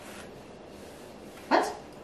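A dog barks once, a single short bark about one and a half seconds in, over quiet room noise.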